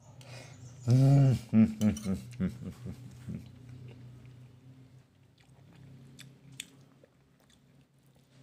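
A man's appreciative "mmm" hums and murmurs while chewing a mouthful of food, the loudest a long hum about a second in. Near the end come a few light clicks of a metal spoon on a ceramic plate.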